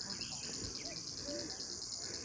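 Insects chirring steadily, a high, finely pulsing drone, with a few faint short notes beneath it.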